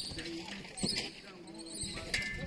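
A couple of sharp knocks about a second in, over faint voices and outdoor background.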